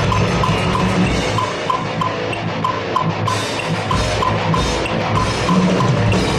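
Acoustic drum kit (22-inch bass drum; 10, 12 and 16-inch toms; Zildjian A Custom cymbals) played fast in a metal style over music with a steady low bass line. An evenly spaced high tick, about three a second, keeps time throughout.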